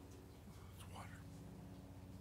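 Faint whispered voice, one short utterance about a second in, over a low steady hum.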